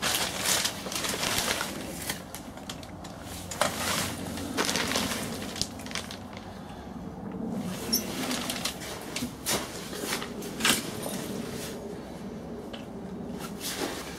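Tent canvas rustling and flapping, with irregular knocks and scrapes as the metal tent bows are pushed out and set into position.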